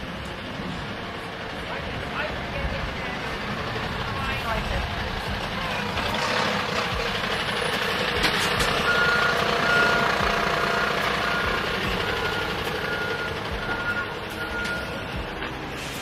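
A Mercedes-Benz lorry's reversing alarm beeping at an even pace, a little more than one beep a second, for about six seconds in the second half. Under it the lorry's diesel engine runs, growing louder towards the middle.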